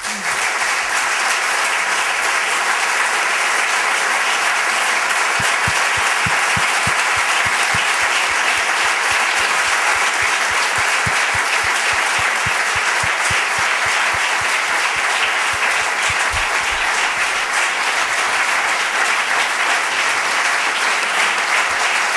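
A large audience applauding, a dense, steady clapping that carries on without a break.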